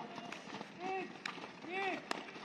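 Soccer ball dribbling on a dirt field: a few sharp taps and kicks of the ball. Two short shouted calls, about a second in and near the end, are the loudest sounds.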